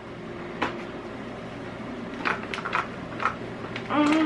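Plastic clicks and knocks from a baby activity walker being folded from its sit-down play mode into its walking mode, as its play panel is pulled back and its locking tabs are worked. One click comes early, and a cluster of sharper clicks comes in the second half.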